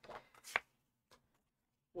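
Printed photos being handled and laid down on cardstock: a few brief paper rustles and a sharp tap about half a second in.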